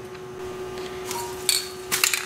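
Handling noise: a couple of sharp clicks and clatters, about a second and a half in and just before the end, as a metal part is set down and an aerosol spray can is picked up, over a steady low hum.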